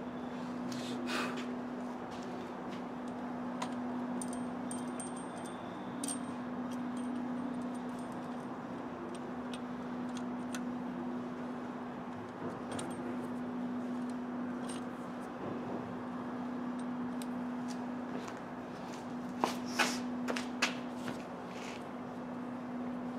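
Light metallic clicks and rattles of hand work as the mounting bolts of a new throttle body are fitted by hand, over a steady hum. The clicks are scattered, with a quick cluster of louder ones near the end.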